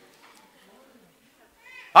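A large hall, mostly quiet with faint murmuring, then a rising voice near the end as speech begins.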